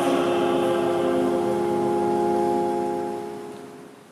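A keyboard instrument holding the final chord of a hymn-like antiphon after the voices have stopped, a steady sustained chord that fades out near the end.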